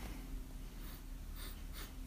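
Quiet room with faint sips and breaths at small tea cups as ripe pu'erh is tasted and smelled, over a low steady hum.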